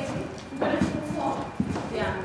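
Footsteps of several people walking on a hard floor, with voices talking over them.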